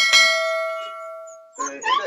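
Subscribe-button animation sound effect: a single bell-like ding that rings and dies away over about a second and a half, then cuts off.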